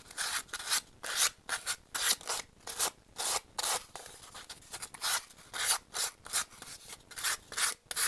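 A hand-held piece of sandpaper rubbed in short strokes, two or three a second, along the cut edge of a foam board circle to clean up the edge.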